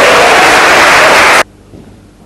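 Spectators in a hall applauding loudly after a point, the sound cutting off abruptly about one and a half seconds in.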